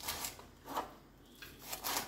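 Kitchen knife slicing through green beans onto a plastic cutting board: about four short cuts, roughly half a second apart.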